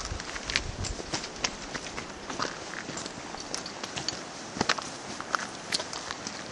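Footsteps of a hiker on a dirt trail, each step a sharp crunch or scuff about once a second, over a steady outdoor hiss.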